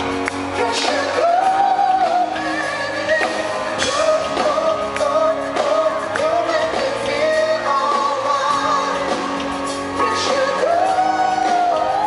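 Male singer singing a pop song live through a handheld microphone over a live band backing, holding long notes that bend up and down.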